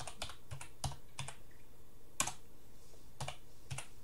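Computer keyboard keys being typed in uneven short runs, about ten keystrokes, the loudest a little past halfway, as a command is entered at a terminal prompt.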